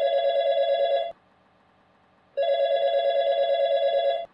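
Telephone ringing with an electronic warbling trill. One ring ends about a second in and a second ring starts after a pause of just over a second.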